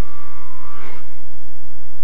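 Harmonica note played with cupped hands, trailing off about a second in, over a loud steady low electrical hum.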